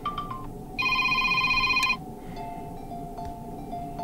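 Motorola Defy 2021 built-in ringtones previewing through the phone's speaker, changing as each new tone in the list is tapped. First comes the tail of a short melodic phrase. Next is a loud buzzing electronic trill lasting about a second, and from about two seconds in, soft, sparse synthesized notes.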